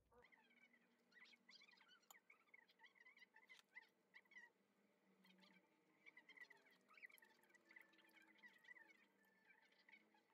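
Near silence, with faint scattered clicks of a metal spoon against ceramic bowls while eating, and faint high chirping sounds throughout.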